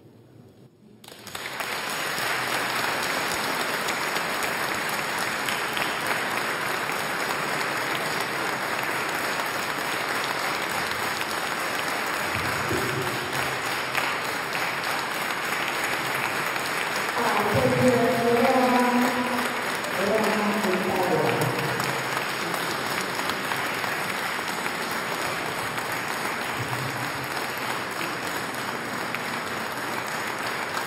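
Audience applauding steadily, starting about a second in as the choir's singing ends. A few voices call out over the clapping for a few seconds past the middle.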